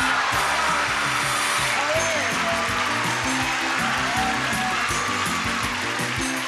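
Upbeat game-show prize-reveal music playing over a studio audience cheering and applauding.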